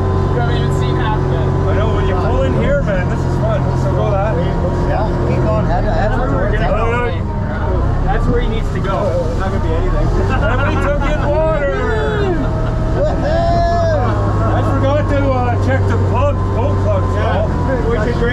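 Sherp amphibious ATV's engine running with a steady low drone, its note shifting a couple of times, under voices talking.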